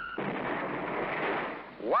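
A high steady whistle cuts off just after the start, and a sudden rushing explosion sound follows, fading over about a second and a half: the toy missile striking the Lionel exploding target boxcar, which blows apart.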